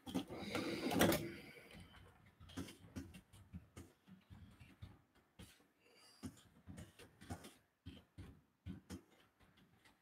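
Computer keyboard typing: irregular key taps and clicks, with a louder, longer stretch of noise in the first two seconds.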